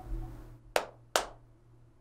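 Two sharp hand claps a little under half a second apart, one flat palm striking the other, as in the ASL sign for 'school'.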